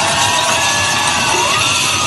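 A tower of glass champagne coupes collapsing, glasses crashing and shattering across a table, under music and people shouting.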